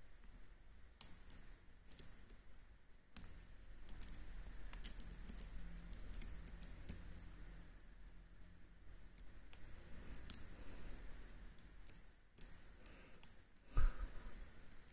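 Scattered light metallic clicks of a lock pick working the pins and sliders inside an M&C Color high-security cylinder, with a low handling rumble. A single louder knock comes near the end.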